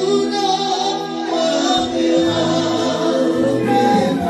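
Live band music with singing, the voice holding long notes over a steady accompaniment.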